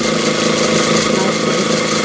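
Industrial sewing machine running at a steady speed, top-stitching through pleated cotton; it starts suddenly and holds an even hum.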